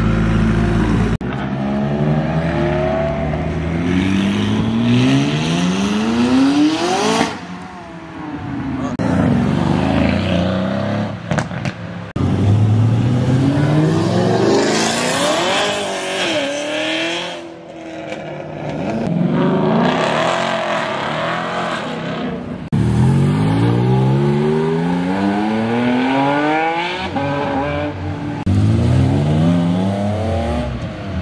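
Several sports cars accelerate hard away from the spot one after another. Each engine note rises in pitch over a few seconds as it revs up.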